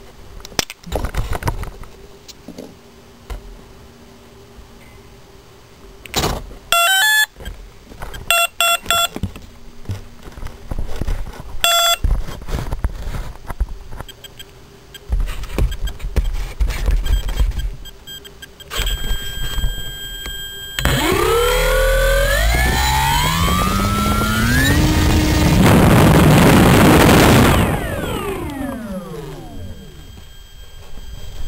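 A Turnigy SK 35-42 brushless outrunner motor driving an 11x7 propeller. Short electronic arming beeps sound first, then, about two-thirds of the way in, the motor and prop wind up with a rising whine to full throttle for a static wattmeter test. It holds there for about three seconds, drawing about 37 amps (427 watts), then spins down with a falling pitch near the end.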